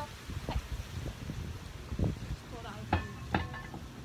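A few light knocks and clatters of objects being handled, scattered through the moment, with the two loudest close together near the end, over a low rumble.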